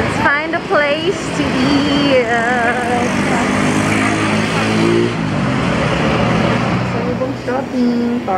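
Busy outdoor ambience: people's voices mixed with motor vehicle noise, with an engine-like hum rising slowly in pitch through the middle.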